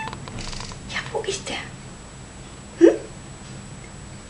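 A domestic cat's short meow that slides up in pitch, about three seconds in. A few brief, softer sounds come about a second in.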